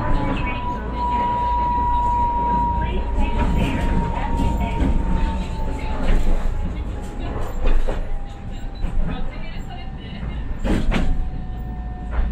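Tram running on street track, heard from inside the cab: a steady low rumble of wheels on rail under a thin motor whine that slowly falls in pitch as the tram slows. A few sharp clacks, the loudest near the end.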